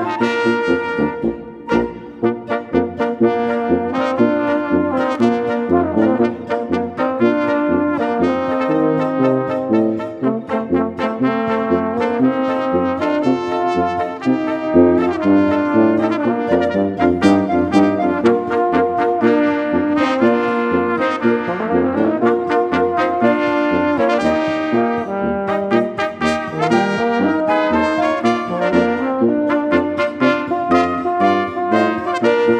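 A Volksmusik polka played by a wind quintet: clarinet, two flugelhorns, tenor horn and bass, in a steady, lively rhythm.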